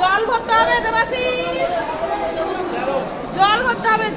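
A woman talking close to the microphone, with other people's chatter around her.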